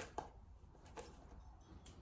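Near silence, with a few faint soft ticks and rustles from a hairbrush being worked through long hair.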